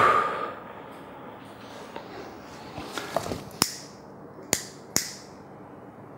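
A handheld lighter clicked five times in quick succession as a candle is lit, each a sharp click with a brief ringing tail, about three to five seconds in. At the very start a loud sound fades out.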